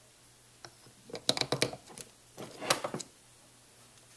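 Light plastic clicks and taps in two short clusters, about a second in and again near the three-second mark, as the hose of a FoodSaver jar-sealer attachment is fitted to the lid on a canning jar and to the vacuum sealer.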